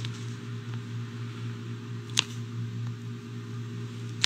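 Room tone in a small room: a steady low hum with faint hiss, and one sharp click about halfway through.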